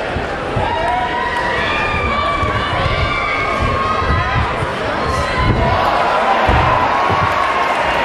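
Boxing crowd shouting and cheering, with single voices calling out over the din; the cheering swells louder from about five seconds in.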